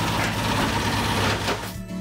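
Truck noise, a loud steady rushing sound that dies away about a second and a half in, over background music.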